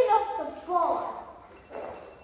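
A child's high voice in short, wordless vocal sounds, followed by a brief rush of noise near the end.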